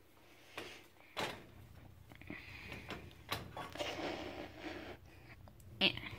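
Handling noise from a frying pan and plush toys on an electric coil stove: a sharp knock about a second in, a few lighter clicks, and rustling and scraping through the middle. A short voiced "eh" comes at the very end.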